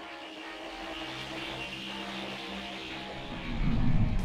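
Title-sequence music of sustained, layered tones building slowly, joined about three and a half seconds in by a loud low rumble that swells up.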